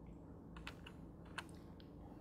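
Quiet room tone with a few scattered, faint soft clicks.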